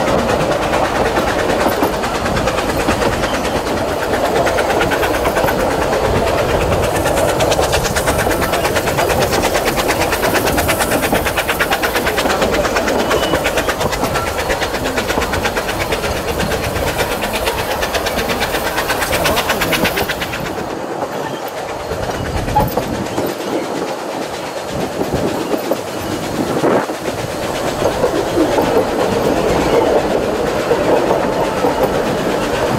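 Vale of Rheidol Railway narrow-gauge steam train running along the track, heard from an open carriage window. Its carriages' wheels give a steady, fast rattle. About two-thirds of the way in, the sound turns duller and a little quieter.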